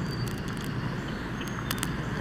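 Steady outdoor background noise, an even hiss without any clear voice or engine, with a few faint clicks.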